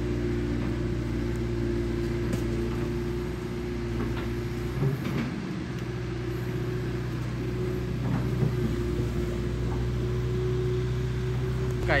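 The engine of a long-reach excavator on a river pontoon barge running steadily while the arm swings and the bucket dumps mud, with a few short knocks in the middle.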